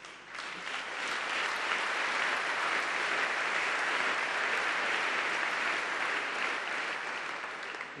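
Audience applauding. The clapping rises quickly just after the start, holds steady for several seconds and eases slightly near the end.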